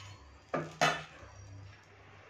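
Two quick clanks of metal kitchenware about a quarter of a second apart, the second louder and ringing briefly.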